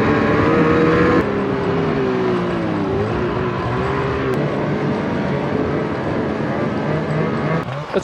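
Snowmobile engine running under way, its pitch rising and falling with the throttle, with an abrupt jump in the sound about a second in.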